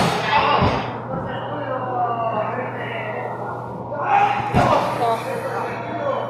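Wrestlers' bodies hitting the mat of a wrestling ring: a dull thud just under a second in and a heavier slam about four and a half seconds in, with spectators shouting around them.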